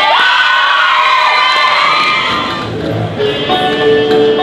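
Audience cheering and whooping with high, rising shouts as the music of a dance number cuts off. New music starts about three seconds in.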